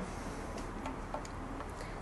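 A few faint, light ticks over a steady low room hum.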